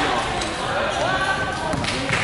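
Basketball bouncing on an indoor hardwood court during play, with players' voices calling out.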